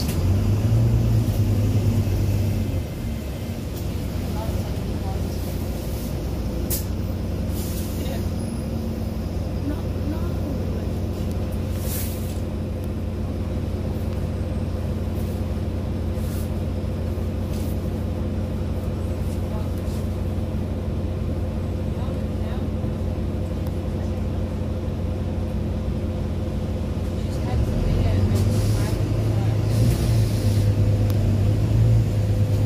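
Steady hum of a Wright Gemini 2 double-decker bus's engine heard from the upper deck. It is louder for the first few seconds and again near the end, and lower in between. A few short hisses of air come in the middle stretch.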